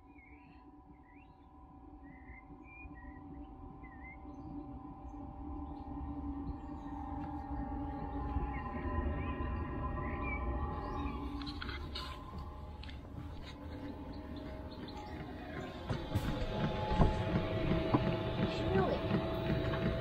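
Newly fitted diesel air heater on its first start-up, running with a steady whirring hum that grows louder over the first several seconds, then holds steady.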